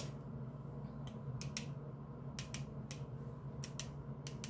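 Small hard objects being handled: a run of sharp, light clicks, a few scattered at first and coming quicker near the end, over a low steady hum.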